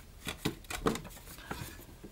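Handling noise from cardboard antenna parts on a bench: a few light clicks and taps with soft rustling, as a cardboard tube wound with copper wire is picked up and brought to a cardboard base.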